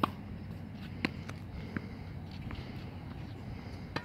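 A tennis racket strikes a ball once right at the start, a single sharp hit. About a second later comes another sharp knock, then two fainter ticks, over a steady low background noise.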